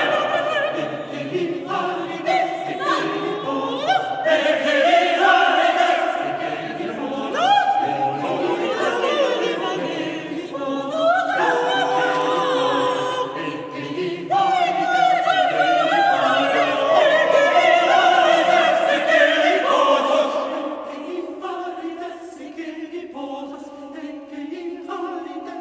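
Mixed chamber choir singing unaccompanied contemporary choral music in a stone cathedral's reverberant acoustic: many voices holding layered chords, with rising vocal glides a third and half of the way through. The choir grows quieter and thinner near the end.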